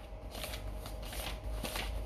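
Faint rustling handling noise: a series of short, dry brushing strokes.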